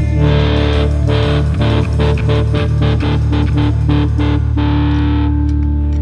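Live band music led by distorted electric guitar over bass: a run of quick, even chord hits for a few seconds, then a chord left to ring for the last second or so.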